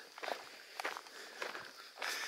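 Faint footsteps on a gravel road, about two steps a second.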